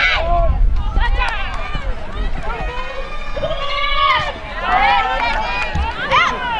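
High-pitched women's voices shouting and calling out over one another during a touch football match, players and sideline spectators yelling as the play runs. A low rumble sits under the voices in the first second.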